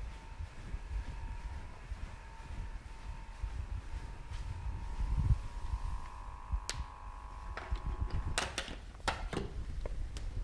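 A steady electrical whine from a device being turned off: one thin high tone that shifts slightly in pitch about halfway, then cuts out near the end amid a few sharp clicks and knocks. Low handling rumble runs beneath.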